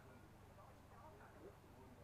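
Near silence: faint, distant voices talking, over a low steady hum.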